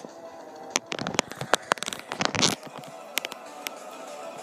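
Handling noise from plush toys and the camera being moved against each other: a run of sharp clicks and taps from about a second to two and a half seconds in. Faint background music plays underneath.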